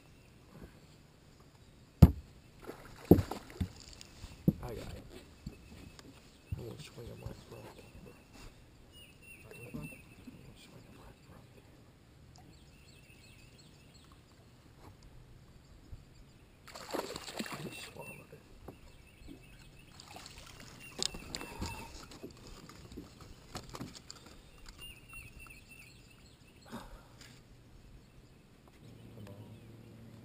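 Sharp knocks on a fishing boat in the first few seconds, then splashing water midway, while a hooked largemouth bass is played at the side of the boat.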